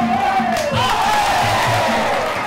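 Muay Thai fight music (sarama): a wailing, gliding reed melody in the style of the Thai pi java oboe over a beat of hand drums.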